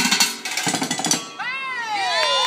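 Rapid drumming on metal pots and pans, which stops about a second in. Then come high whooping shouts that arch up and down in pitch.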